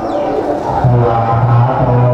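Buddhist monks chanting in a low monotone, a single pitch held steady and growing stronger about a second in.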